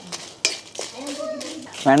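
Wooden spatula scraping and knocking against a metal kadai as dry red chillies are stirred, with one sharp knock about half a second in.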